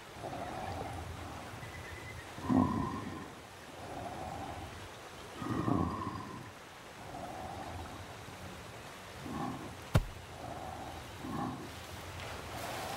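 A gorilla breathing heavily in a slow rhythm, one grunting breath about every one and a half seconds, louder breaths alternating with softer ones. A single sharp click about ten seconds in.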